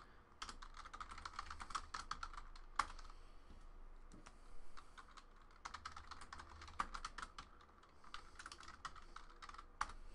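Typing on a computer keyboard: quick, irregular runs of faint key clicks with a couple of short pauses.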